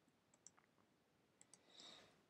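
Near silence with a few faint, short clicks, one about half a second in and a couple around a second and a half.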